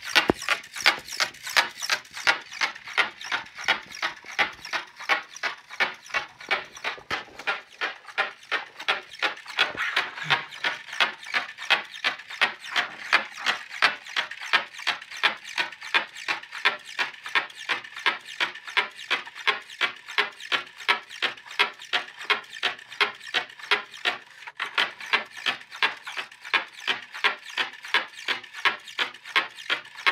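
Homemade insect robot walking on two servo motors: a steady rhythmic clicking of servos and legs, about three clicks a second.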